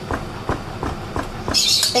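Chef's knife chopping on a wooden cutting board: about five sharp knocks, roughly three a second. A brief hiss comes near the end.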